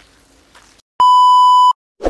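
A single loud, steady electronic beep, starting about a second in and cutting off sharply after under a second.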